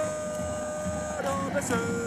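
Football supporters' chant or music in the stadium: long held notes, the first lasting about a second, stepping down in pitch twice, over a low crowd background.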